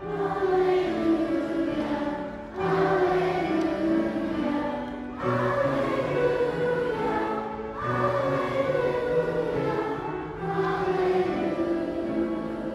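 Voices singing a worship song with musical accompaniment, in phrases that start about every two and a half seconds, each sliding down in pitch.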